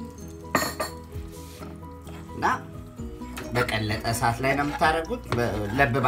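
A metal spoon clinking against a pot twice, about half a second and two and a half seconds in, over background music.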